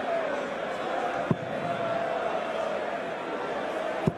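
Steel-tip darts striking a bristle dartboard: one sharp thud about a third of the way in and another right at the end, over the steady noise of a large arena crowd.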